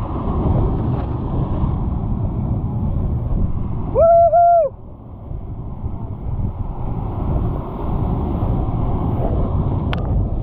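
Surf washing over jetty rocks and wind buffeting the microphone, a steady rush. About four seconds in comes a short, loud, hoot-like tone lasting under a second.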